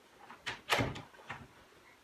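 Dry-erase marker scraping on a whiteboard on an easel in three short strokes, about half a second, three-quarters of a second and a second and a quarter in. The middle stroke is loudest and carries a light knock from the board.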